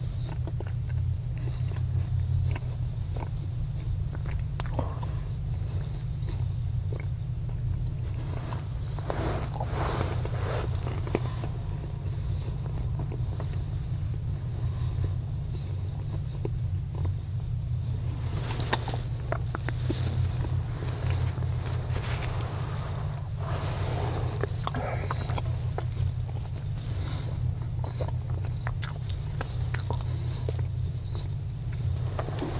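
Close-up chewing and mouth sounds of a man eating toast, with many small clicks and bursts that are busiest around ten seconds in and again from about eighteen to twenty-five seconds in. Under them runs a steady low hum inside the vehicle cabin.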